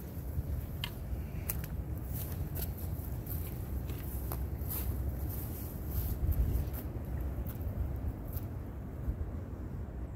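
Wind buffeting the microphone in a low, uneven rumble, with scattered light crackles and ticks of footsteps through grass and brush.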